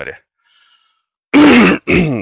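A man's wordless vocal sound, short and loud, falling in pitch, about one and a half seconds in after a near-silent pause, quickly followed by a second, shorter one: a grunt-like hesitation sound.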